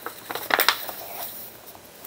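Old book pages being handled and a glue stick worked on paper: dry rustling and scraping, with a few sharp taps about half a second in.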